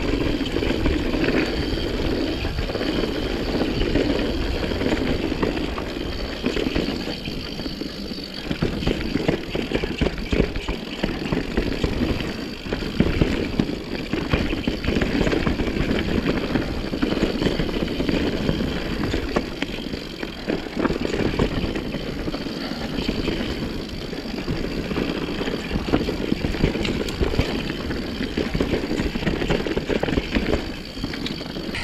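Mountain bike riding over a dirt singletrack: a continuous rumble of tyre and wind noise with frequent short clatters and rattles from the bike over bumps.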